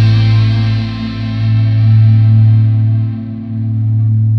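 Heavy-metal band's held final chord: distorted electric guitar and bass ringing out after the drums and vocals stop, the high end slowly fading while the level swells and dips.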